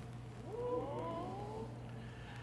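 A few high voices from the audience give a drawn-out 'ooh' of surprise that rises in pitch, starting about half a second in and fading before the end.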